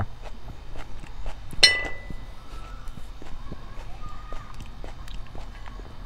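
Chewing a piece of raw poblano-type pepper, with a run of small crisp crunches and one sharper click a little under two seconds in.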